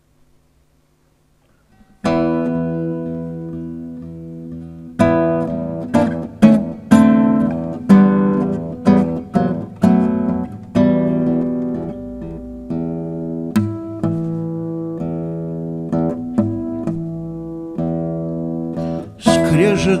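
Acoustic guitar played solo as a song's introduction. After a brief silence, a chord is struck about two seconds in and left to ring. A run of plucked notes and chords follows, with a voice coming in just at the end.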